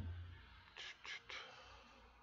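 Near silence with three faint, short breathy hisses about a second in: a person's quiet breath or whisper.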